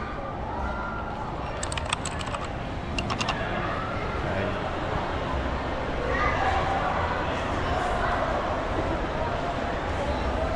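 Keys of a Crayon Shin-chan toy keyboard pressed by hand: a quick run of sharp clicks about two seconds in, then two or three more a second later. People talk in the background throughout.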